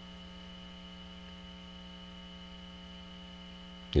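Steady electrical hum in the recording, a low drone with a fainter high-pitched whine above it.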